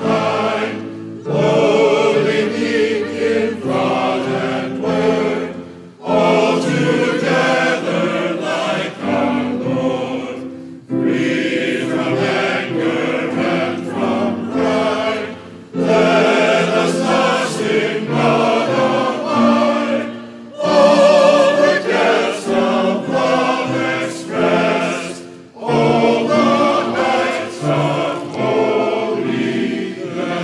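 Church choir singing a hymn in sustained phrases of about five seconds each, with short breaks for breath between the lines.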